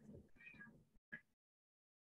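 Near silence, broken by a faint, brief high-pitched sound about half a second in and a tiny blip just after a second, before the sound cuts to dead silence.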